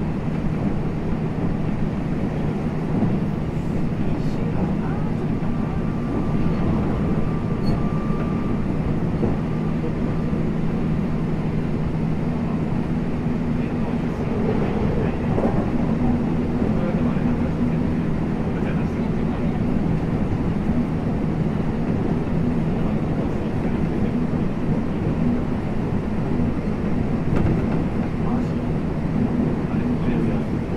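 Running sound aboard a JR West 225 series 0 electric train at speed: a steady low rumble of wheels on rail with motor hum. A faint high tone comes in for a few seconds about a quarter of the way in.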